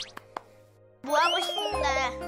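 Two faint clicks, then a moment of near silence; about a second in, a cartoon-style swooping sound effect rises and falls, and a background music cue with a low bass note comes in.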